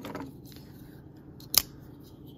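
A single sharp metallic click about one and a half seconds in, from handling a Benchmade Mini Presidio II folding knife.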